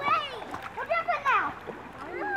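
Children's high voices calling out and talking over the splashing of kids swimming in a pool.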